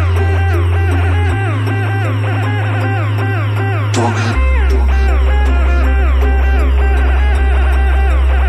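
Electronic music: a deep held bass note that changes pitch about a second in and again about four seconds in, under a fast repeating riff of short plucked synth notes. A brief swish comes just before the second bass change.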